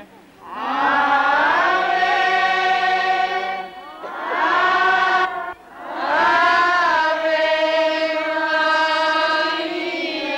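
A crowd of people singing a hymn together in long, held notes, in three phrases with short breaths between them.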